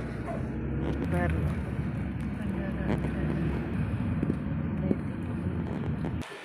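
Car cabin noise while driving slowly: a steady low rumble of engine and tyres heard from inside the car.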